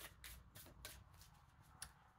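A deck of cards being shuffled by hand: faint, quick card clicks, about four or five a second, with one sharper click near the end.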